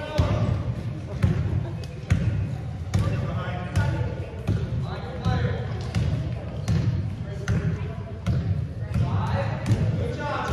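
Basketball being dribbled on a hardwood-style gym floor during a game: repeated irregular thuds of the ball and players' footfalls, over indistinct voices from players and spectators.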